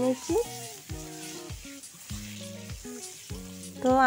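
Boiled eggs frying in hot oil in an iron kadai, a steady sizzle as a metal spatula turns them. A soft background tune plays underneath.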